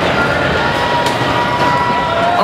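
Loud, steady din of a robotics competition arena during a match: crowd noise and machine noise from the robots on the field, with a thin held tone through the middle.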